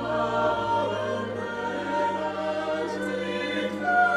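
A choir singing slow, held chords, with a low note sustained beneath.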